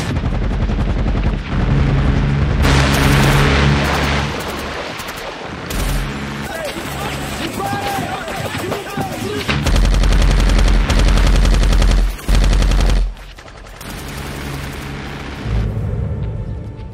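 Heavy automatic gunfire from machine guns in long, rapid bursts, as mixed for a film's battle scene over a low music score. The fastest, loudest burst comes in the last third and stops abruptly, with one short break in it.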